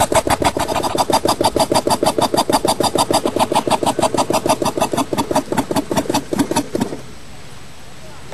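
Compressed-air piston engine of a small experimental vehicle running, its exhaust puffing in a rapid, even beat of about eight a second. The puffing stops about seven seconds in.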